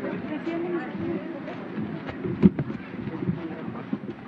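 Many voices of a close-packed crowd talking over one another, with no single speaker clear. There is one sharp knock about halfway through.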